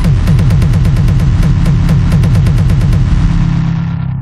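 Electronic music playing back from FL Studio: a fast, even roll of bass-heavy drum hits, each dropping in pitch, with a bright click on top, about eight a second.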